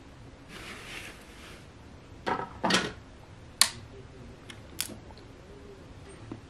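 A vinyl record being handled and set up on a wood-cased turntable: a brief rustle, then two knocks a little past two seconds in and a few sharp clicks of the turntable's parts and tonearm being worked.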